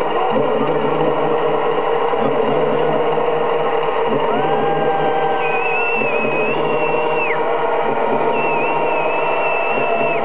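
Loud electronic dance music over a club sound system, with a steady pulsing low beat. High held synth notes that slide between pitches come in about four seconds in and return near the end.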